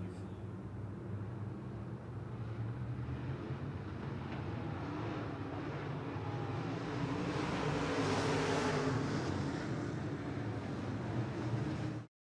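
A pack of dirt-track race car engines running together on the track, heard at a distance, growing louder for a few seconds from about seven seconds in.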